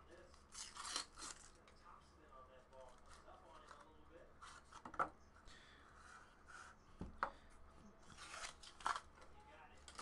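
Faint handling of a cardboard trading-card box and its cards: short rustles and scrapes as the box is opened and the stack is slid out and set down, with a sharp click about seven seconds in.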